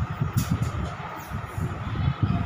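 Low, uneven rumble, with a short scratch of chalk on a blackboard about half a second in.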